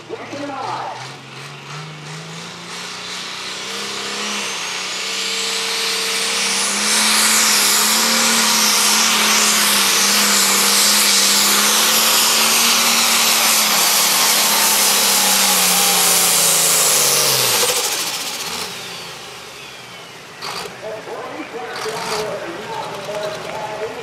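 Turbocharged diesel engine of an International Super/Pro Stock pulling tractor at full load, its note climbing over the first several seconds with a rising turbo whine, then held at full power for about ten seconds. It drops away sharply about eighteen seconds in as the pull ends.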